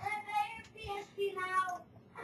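A child's voice singing a few short, held notes.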